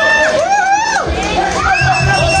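Live rock band playing amid a crowd shouting along, with pitched lines bending up and down over it; drums and bass pulse in about a second in.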